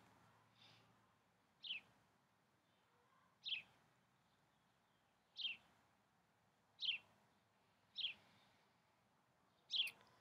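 A bird calling: a short chirp that falls in pitch, repeated six times, one every second or two, faint over a quiet background.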